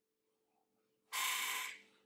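A man's quick intake of breath, lasting under a second, about a second in, over a faint steady hum.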